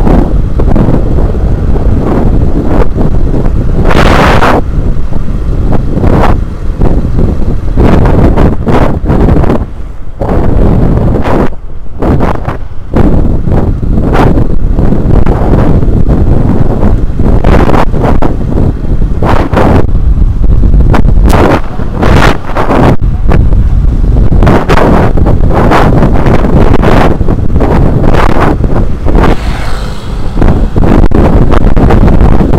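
Loud, gusting wind buffeting the microphone of a camera on a moving motorcycle, with the motorcycle's running engine and road noise beneath it.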